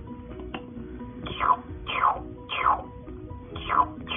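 Baby Alive doll's electronic drinking sounds as a toy bottle is held to its mouth: a series of about five short, falling chirps, some in quick pairs.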